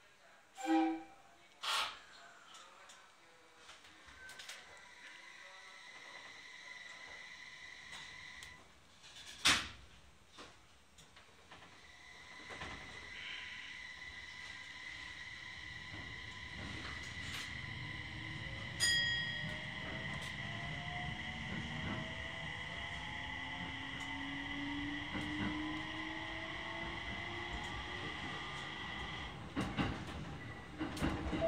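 JR 701-series electric train pulling away, heard from inside the car: a few knocks and a sharp thunk, then running rumble and a steady high tone building up. A short bell-like ding about two-thirds of the way through is the ATS-P chime just after departure. The traction motors' whine climbs slowly in pitch as the train accelerates.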